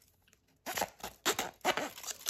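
Sharp knife cutting around the rim of a plastic single-serve coffee pod, slicing through its foil lid: an irregular run of short cutting strokes that begins about two-thirds of a second in.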